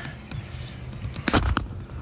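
Handling noise from a plastic solar pool heater end cap and pipe fitting being worked by hand: a few light clicks, with a louder short rub or knock about one and a half seconds in.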